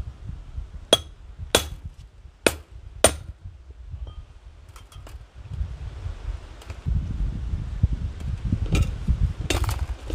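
Hammer striking a cold chisel to cut through steel wire on a wooden stump: four sharp metallic blows with a short ring, about a second in and over the next two seconds. A low rumble and a couple of weaker knocks follow near the end.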